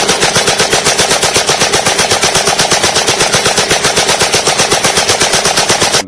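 Sustained automatic machine-gun fire, a rapid, even stream of shots that runs loud and unbroken and stops abruptly near the end.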